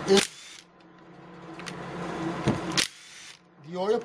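Small cordless power driver turning a bolt in an engine block: the motor hum builds over about two seconds, with a sharp click near the end, then stops abruptly.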